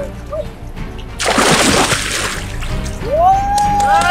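A child jumping into a swimming pool: one big splash about a second in, lasting about a second.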